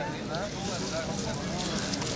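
Faint voices of spectators talking, over steady outdoor background noise.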